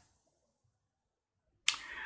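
Dead silence for most of the stretch, broken near the end by a sudden click as sound returns, followed by a faint hiss.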